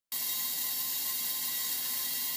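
Steady, even hiss with a faint high-pitched whine running through it.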